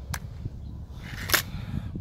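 Break-barrel spring air rifle, a Xisico XS28M in 5.5 mm, being cocked: a short click as the barrel breaks open, then a louder click about a second later as the mainspring piston latches. A low rumble of wind on the microphone runs underneath.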